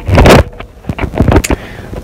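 Handling noise on a phone's microphone as the phone is turned around: a loud rubbing rush for about half a second, then a few short knocks about a second in.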